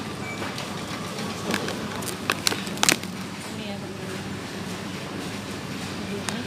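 Supermarket background: a steady low hum with faint distant voices, and a few sharp clicks about two to three seconds in.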